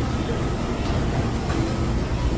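Steady background din of a busy quick-service restaurant, mostly a loud low rumble, with no distinct voices.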